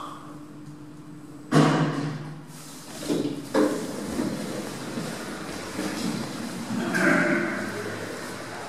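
KONE EcoDisc lift arriving and its sliding car doors opening: a sudden clunk with a low hum about a second and a half in, then a sharp knock about two seconds later, then further door and mechanism noise near the end.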